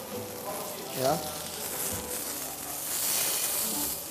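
Stuffed beef fillet sizzling in a little oil on a hot flat-top griddle as its outside is browned. The sizzle swells louder about three seconds in.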